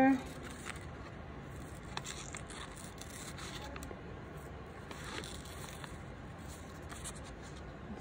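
Scissors making small, quiet, irregular snips through paper.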